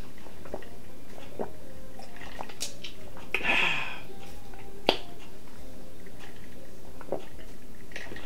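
Lemonade being drunk from a glass mason jar: soft swallowing and small mouth clicks, a short breathy exhale between sips about three and a half seconds in, and one sharp click near five seconds.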